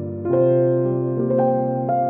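Slow instrumental worship music played on piano. A new chord is struck about a third of a second in and held ringing, with single melody notes added over it twice.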